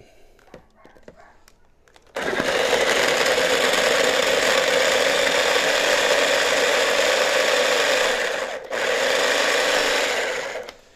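Electric mini food chopper running as its blade chops radishes. The motor starts about two seconds in, runs steadily, cuts out for a moment near the end and starts again.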